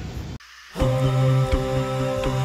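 A vocal-only nasheed comes in a little under a second in, after a short drop in sound: voices humming long sustained notes, with no instruments.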